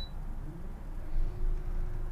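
Minn Kota trolling motor starting up from its remote: a faint, steady electric motor hum sets in about a second in and holds, over a low rumble.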